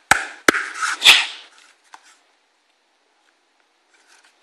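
Handling knocks and rubbing of a Kydex cheek rest on a rubber-overmolded rifle stock: three sharp knocks about half a second apart in the first second or so, with scuffing between them.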